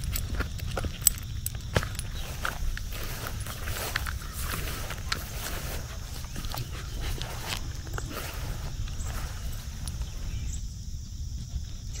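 Dogs moving about close by: footsteps and rustling over leaves and grass, with scattered short clicks and two sharper clicks about one and two seconds in, over a steady low rumble.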